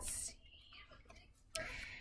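A woman's faint breathing and whispering: a short breath at the start and another soft breathy stretch about one and a half seconds in, with near silence between.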